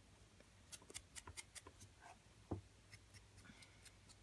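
Faint dabbing and rubbing of a small sponge against the edges of a die-cut paper dragonfly as ink is sponged onto them: a few soft ticks and rubs, the most distinct about two and a half seconds in.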